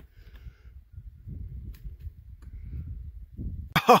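Uneven low rumbling noise on the camera's microphone, with a few faint clicks, as the camera is pushed in close among the shrub's stems.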